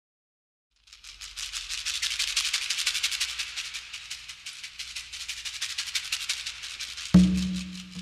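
Opening of a recorded song: after a moment of silence a fast shaker rhythm fades in and keeps going, then about seven seconds in a loud low pitched note strikes in and rings.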